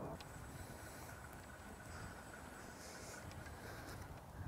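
Faint, steady outdoor background noise, mostly a low rumble with a little hiss and no distinct events.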